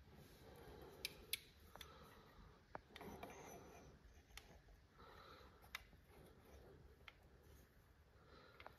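Faint metallic clicks and taps as clutch release parts are handled on the input-shaft guide inside a manual gearbox's bell housing, a handful of light, irregular clicks over a quiet background.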